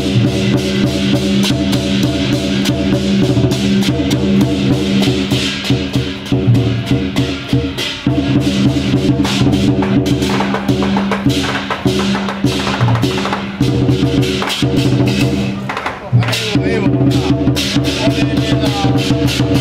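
Loud procession music: held pitched tones over fast, dense drumming and cymbal-like strikes, with brief dips about eight and sixteen seconds in.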